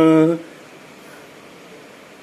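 A man's voice holding a long steady vowel, like a drawn-out "oh", that ends about half a second in; after that only a low steady room hum.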